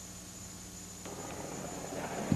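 Faint steady hiss and electrical hum of the recording, with no clear sound event. About a second in there is a small click, and the background noise grows slightly louder.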